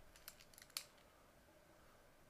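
A digital pen stylus tapping and scratching on a tablet's writing surface during handwriting: a few faint light clicks in the first second, the sharpest just under a second in, over otherwise near-silent room tone.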